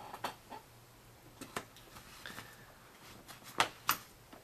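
Light clicks and taps of metal folding knives being handled and set down among others on a table, a few scattered strikes with a sharper pair near the end.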